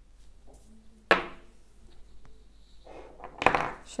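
Wooden cylinder pieces of a children's block set knocked against each other and set down on a wooden tabletop: one sharp knock about a second in, then a short cluster of clacks near the end.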